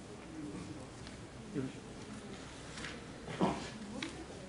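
Faint, scattered human voices murmuring in a large hall, with a short louder vocal sound about three and a half seconds in.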